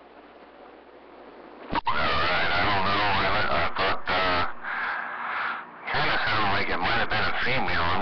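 CB radio receiver on AM hissing with faint band noise, then about two seconds in a sharp click as a station keys up and a voice comes through the radio speaker, too garbled for words to be made out.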